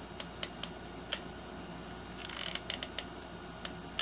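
Faint handling sounds of a hot glue gun laying a bead of glue along a cardboard rocket fin joint: a few small, scattered clicks, with a brief rustle a little past halfway.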